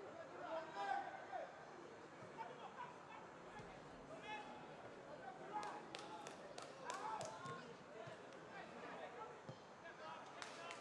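Faint, distant voices of players calling out on a football pitch. A run of sharp knocks comes in the second half.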